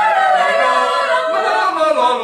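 Small mixed choir of men and women singing a cappella in harmony, several voices holding chords together.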